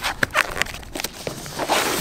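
Cardboard box being opened by hand: its flaps bending and the paper packing inside rustling, a quick run of sharp crackles and clicks.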